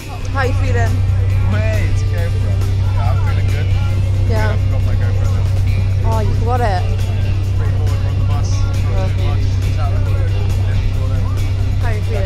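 Loud steady low drone inside a moving coach: engine and road noise, starting abruptly at the beginning.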